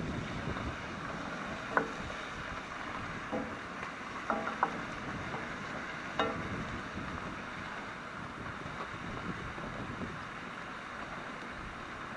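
Chopped vegetables sizzling steadily in a hot pan on a charcoal grill, stirred with a wooden spoon, with a few light clicks of the spoon against the pan.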